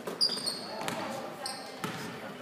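Basketball game in a gym: sneakers squeaking briefly on the hardwood court twice, and a basketball bouncing, with crowd voices around.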